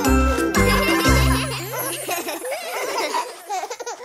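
Children's cartoon song music ending on a held note, with animated characters giggling and laughing over and after it; the laughter tails off near the end.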